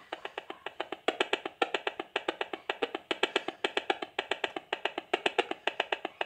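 HF35C high-frequency analyser's built-in audio output clicking in an even, fast rhythm, about ten clicks a second, as it picks up the pulsed transmissions of a Wi-Fi sprinkler control box.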